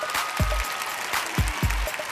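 Studio audience applauding over upbeat background music with a steady kick-drum beat, about two beats a second.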